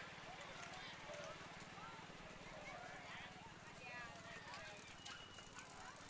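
Faint, distant voices of players and spectators calling out around a baseball field, over a low steady hum.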